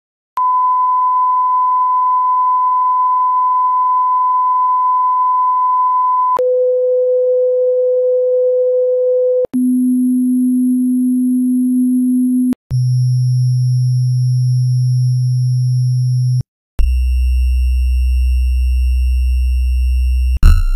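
Broadcast test tones under a TV test card: a steady high beep held for about six seconds. It is followed by a series of steady pure tones, each stepping down an octave and lasting a few seconds, with brief gaps between them. The last tone is a deep low hum.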